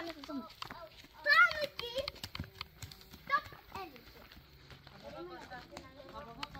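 Young children's voices: short high-pitched calls and chatter, with a few light clicks between them.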